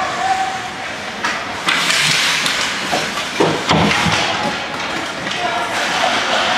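Ice hockey play: skate blades scraping the ice in a long hiss about two seconds in, followed by a few heavy knocks and thuds near the middle, typical of players and the puck hitting the rink boards.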